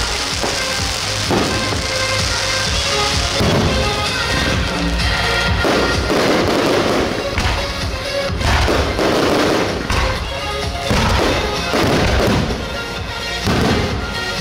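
Aerial fireworks shells bursting overhead in a string of bangs every second or two, with music playing throughout.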